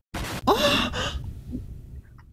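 Edited-in sound effect: a short burst of noise, then a gasp-like vocal cry whose pitch rises and then falls, over a low rumble that dies away near the end.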